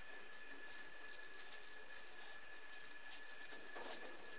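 Faint soft rustling of stretchy fabric and synthetic doll stuffing as the fiberfill is pushed into a fabric hair bow by hand, over a steady hiss with a thin, faint high-pitched whine.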